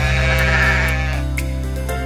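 A sheep bleat sound effect that dies away after about a second, over a held note of children's-song backing music.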